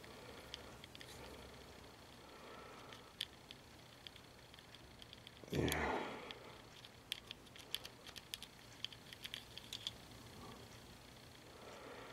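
Faint, scattered small clicks and taps of plastic carburetor parts being handled as an emulsion tube is wiggled into the carburetor body, most of them around three seconds in and again in the back half.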